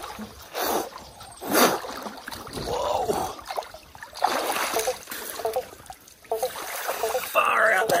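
Splashing of a person moving through shallow creek water, with a couple of louder splashes early on and a running-water background, mixed with short wordless vocal sounds from the bather in the cold water.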